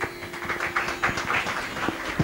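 A drone accompaniment plays a steady held pitch under a run of quick plucked strokes, about four or five a second. There are a few knocks from a microphone being handled.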